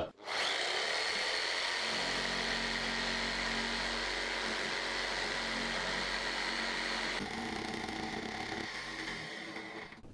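Electric jigsaw with a 25 cm blade sawing through a board just under 16 cm thick. It runs steadily from just after the start, changes tone about two seconds in and again around seven seconds, then fades near the end. The long blade flutters at its outer end, so the cut is slow to get going and the wood tears out.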